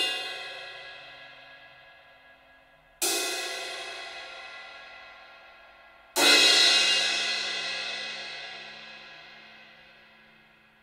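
Sabian Evolution crash cymbal struck on its edge with a drumstick, crashed three times about three seconds apart, each crash ringing out and fading slowly; the last is the loudest.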